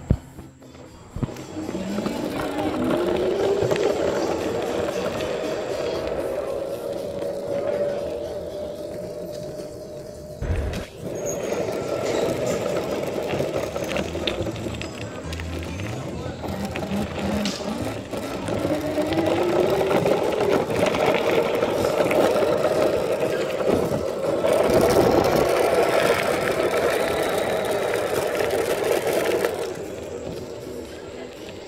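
Razor E200 electric scooter's chain-driven motor whining as it is ridden. The whine rises in pitch as the scooter accelerates about two seconds in and then holds steady. It drops away with a knock around ten seconds, then rises again around seventeen seconds and runs steady until near the end.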